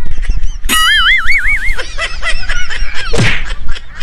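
Passengers on a speedboat shrieking and whooping: a long wavering high cry about a second in, then shorter cries and a louder burst near the end, over a steady low rumble of wind and boat.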